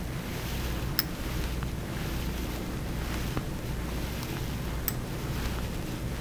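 Steady low hum and hiss of background noise, with two faint clicks, about a second in and near the five-second mark.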